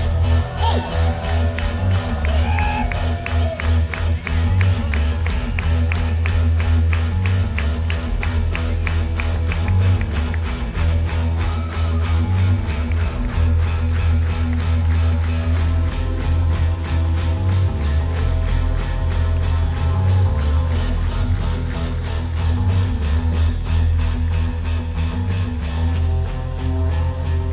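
Psychedelic rock band playing live in a concert hall, recorded from the audience: a heavy bass groove with guitar and a quick, even ticking on top.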